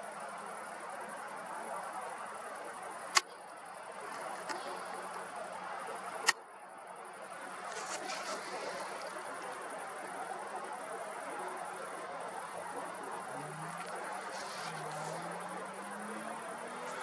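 Night ambience: crickets chirping steadily high up over a steady low rush, broken by two sharp clicks about three seconds and six seconds in. A faint rising hum comes in near the end.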